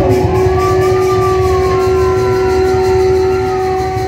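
Live theatre accompaniment: one long, steady held note with a fainter tone rising and falling above it, over dense low drumming.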